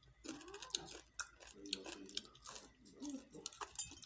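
Chewing a mouthful of half-cooked rice-field eel: irregular wet clicks and smacks of the mouth, with a few muffled hums in between.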